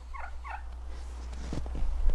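Three short chirping calls from a flock of turkeys and chickens, quickly one after another, over a low steady rumble.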